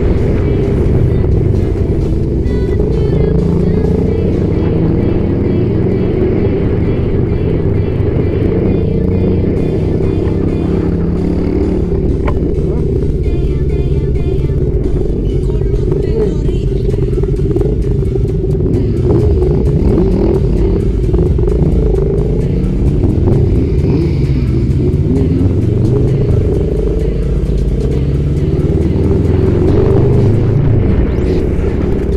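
Motorcycle engine running steadily at riding speed, heavy wind rumble on the microphone, with music playing along.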